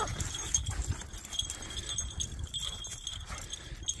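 Two dogs running and playing in snow: their footfalls and scuffling over a low, uneven rumble, with no barking.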